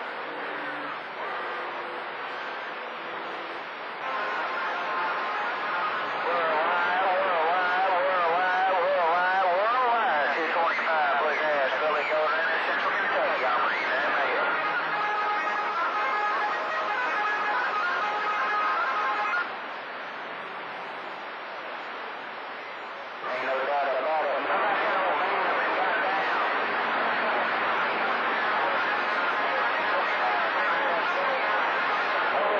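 CB radio receiving distant skip on channel 28 (AM, 27.285 MHz): a hissing channel into which faraway stations fade in and out, heard as warbling, wavering tones and whistles over garbled, unintelligible transmissions. The signal comes up about 4 seconds in, drops back to hiss for a few seconds past the middle, and returns.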